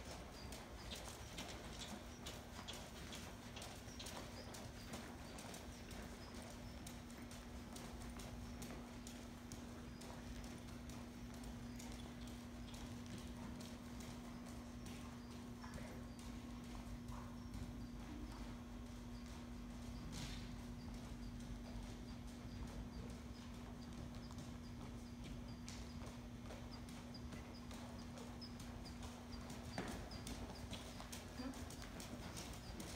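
A horse's hooves striking the sand footing of an indoor arena at a trot, a faint run of soft hoofbeats. A steady low hum runs underneath.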